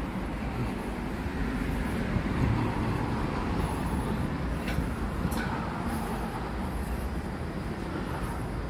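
Steady low outdoor rumble of urban background noise, with two brief sharp clicks about five seconds in.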